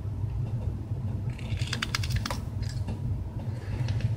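Knife blade cutting into a strip of maple wood: a quick run of short, crisp clicking scrapes starting about a second in and lasting about a second and a half, over a steady low hum.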